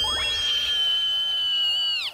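A high-pitched sustained tone, held about two seconds while sinking slightly in pitch, then cut off suddenly: a soundtrack sound effect.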